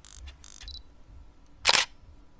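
Camera shutter sound effect: faint clicks and a brief high tone, then one loud, short shutter click near the end.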